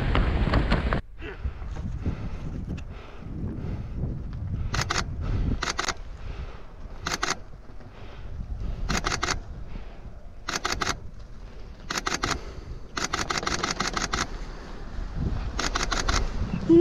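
Wind rushing over the microphone during canopy flight, cut off sharply about a second in. After that, a quieter outdoor background with repeated bursts of rapid camera shutter clicks, several quick shots at a time, every second or two.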